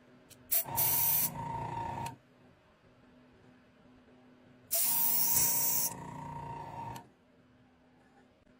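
Compressed air hissing out of an airbrush as its trigger is pressed twice, each blast lasting about one and a half to two seconds. Each starts loud, drops to a softer hiss and then cuts off, with a faint whistle running through it.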